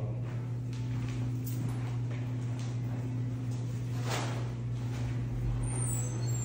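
A steady low hum fills the background, with a few faint ticks and a brief rustling swish about four seconds in.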